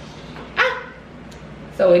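A single short, loud yelp, like a bark, about half a second in.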